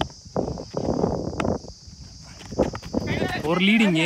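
A single sharp crack of a cricket bat hitting a weighted tennis ball about a second and a half in, followed near the end by loud excited shouting. A steady high insect buzz runs underneath.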